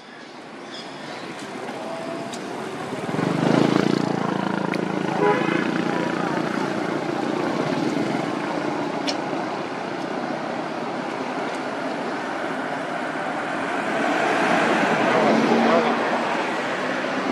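Outdoor background noise with people talking in the distance; the noise swells about three seconds in and again near the end.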